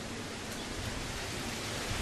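Steady background hiss of room noise with no distinct event.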